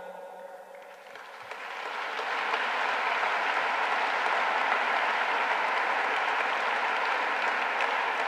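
Audience applauding, building up over the first two seconds and then holding steady.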